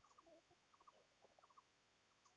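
Near silence: room tone with a scattering of faint, very short ticks, some in quick pairs.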